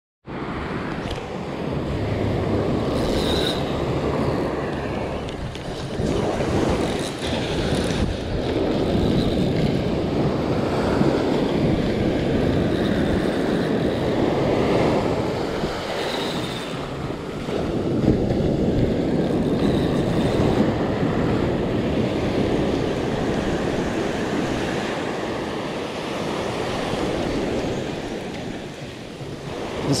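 Ocean surf breaking and washing up the sand at the water's edge, swelling and easing every few seconds.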